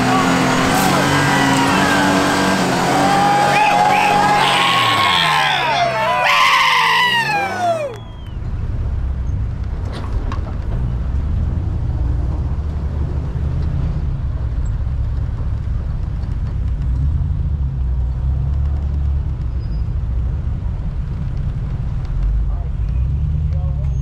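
A Toyota Tacoma pickup's engine revving up and down as it climbs a sandy ledge, with people whooping and shouting over it. About eight seconds in, this gives way to the steady low drone of a truck driving slowly along a dirt trail, heard from inside the cab.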